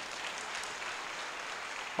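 An audience clapping, a steady patter of applause with no single claps standing out.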